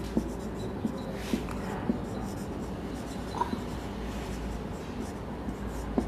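Marker pen writing on a whiteboard: scratchy strokes and small taps of the tip against the board, over a steady low hum.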